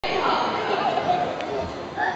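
Indistinct chatter of several spectators' voices in a large sports hall, with no clear words.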